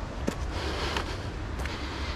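Footsteps on dry dirt and loose stones going down a slope, a light tick about every two-thirds of a second, over a low wind rumble on the microphone.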